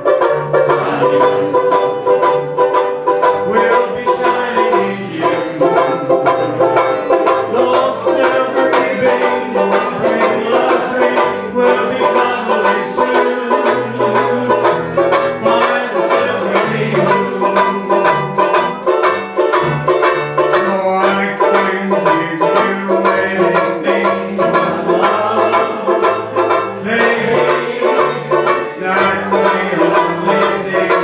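Banjo ukulele (banjolele) strummed in a fast, steady rhythm, playing chords of a sing-along tune.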